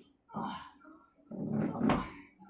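A person's voice making two loud, rough wordless outbursts, a short one early and a longer, louder one near the end, with an animal-like quality.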